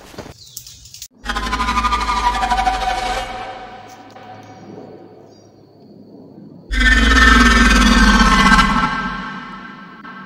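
Two dramatic horror-film sound-effect stingers: each starts suddenly as a loud, held, multi-tone hit over a deep bass rumble and fades away over a couple of seconds. The first comes about a second in, and the second, louder one about five seconds later.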